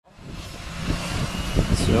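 Steady rumble and hiss of an aircraft engine running at an airfield, fading in from silence over the first half second.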